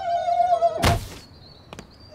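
Cartoon sound effect of a body hitting a glass door. A steady squeaky tone is held for most of the first second, then a single loud thunk comes at the impact, followed by a faint high ringing tone.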